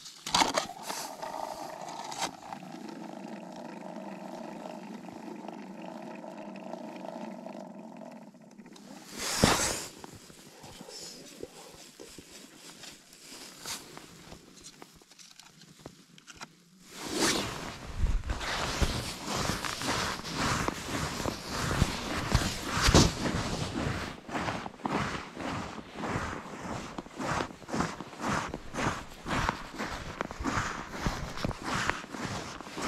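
Footsteps of boots on thin new ice: a quick, steady run of crunching steps through the second half. Earlier, a steady humming drone lasts about eight seconds, followed by one loud burst about a second long.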